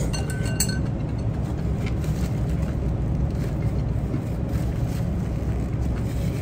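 Steady low rumble of room noise, with a few light clinks in the first second as a ceramic soup spoon and chopsticks touch a ramen bowl while eating.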